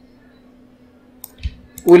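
A couple of faint computer mouse clicks over a low, steady electrical hum, as layers are control-click selected; a voice starts right at the end.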